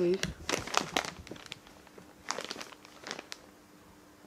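Thin plastic carrier bag crinkling as items are pulled out of it and handled, in two bouts of irregular rustling.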